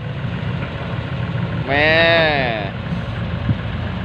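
Heavy diesel engines of a dump truck and an excavator running at idle, a steady low rumble. A man's long drawn-out exclamation comes near the middle, and a single short knock comes near the end.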